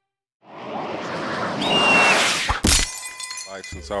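Transition sound effect of shattering glass: a noisy swell builds up with a brief high whistle and ends in a sharp crack about two and a half seconds in.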